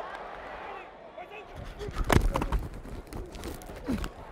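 A football player's body mic picks up stadium crowd noise. About a second and a half in, heavy thuds and rumble of shoulder pads and bodies colliding and feet running begin as the play starts, loudest around the two-second mark.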